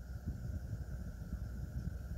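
Nakamichi BX-100 cassette deck's tape transport running in play, a low, steady running sound. It keeps running without auto-stopping now that the optical sensor that reads reel rotation has been replaced.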